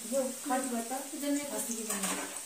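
A woman's voice singing softly under her breath in drawn-out, gliding notes, over a steady faint high hiss.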